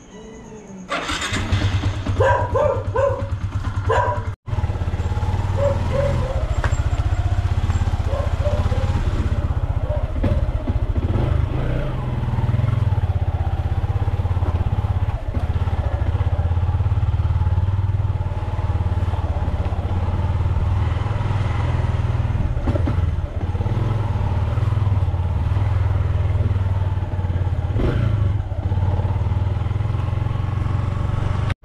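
Motorcycle engine running steadily while being ridden, coming in abruptly about a second in.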